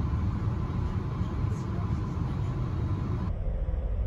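Railway station platform ambience: a steady low rumble with a haze of noise and faint passenger voices. The background shifts abruptly a little past three seconds in.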